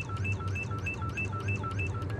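Cartoon soundtrack music: a quick high two-note figure alternating at about six notes a second over a steady low bass.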